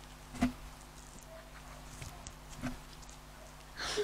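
Mostly quiet, with two short, soft sticky clicks about two seconds apart as white slime is stretched and pulled between the hands.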